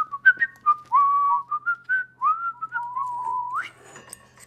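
A man whistling a short, wandering tune that ends on a quick upward slide.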